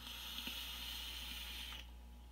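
A long draw on a vape: a steady hiss of air pulled through the atomizer for nearly two seconds, then stopping sharply.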